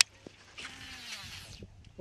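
A sharp click, then about a second of rapid zipping whir from a baitcasting reel being cranked.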